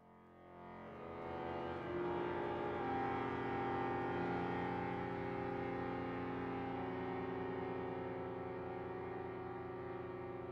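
Chamber music for bayan (chromatic button accordion), violin and cello: a sustained chord of several held notes swelling in from very quiet over the first two seconds, then held steady with a regular pulsing in the low notes.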